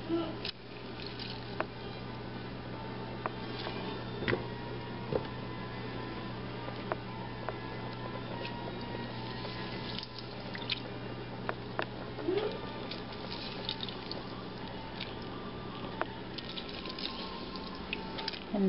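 A lemon squeezed by hand over a steel pot, its juice dripping and trickling into the water below, with small scattered clicks. A steady low hum runs underneath and stops shortly before the end.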